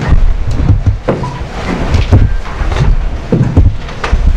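Microphone handling noise: loud low rumble with a string of irregular dull knocks and thuds.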